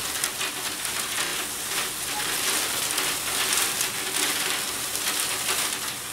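Folded paper slips tumbling inside a wire-mesh raffle drum as it is turned by hand: a steady rustling patter of many small ticks.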